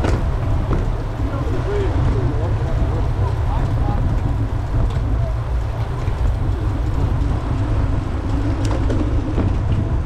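Steady low wind rumble on the microphone of a camera mounted on a moving road bicycle, with a faint hum of tyres on the road.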